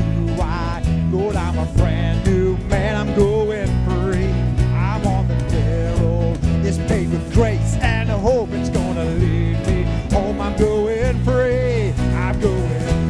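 Live worship band playing a country-style gospel song: acoustic guitar, bass guitar and keyboard over a steady beat, with a wavering melody line on top and no sung words.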